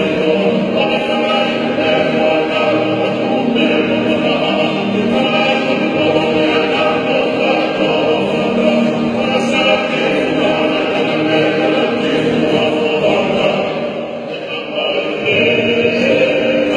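Men's group singing a Tongan hiva kakala in chorus, with several acoustic guitars strummed along; the singing dips briefly about two seconds before the end, then resumes.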